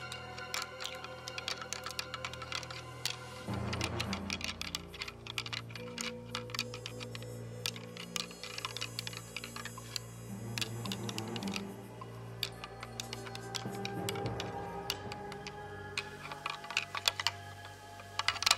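Background music with sustained notes, over bursts of dense clicking and clattering from a pair of whitetail antlers being rattled together to imitate two bucks sparring.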